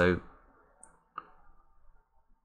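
A single light click of a computer mouse about a second in, over quiet room tone.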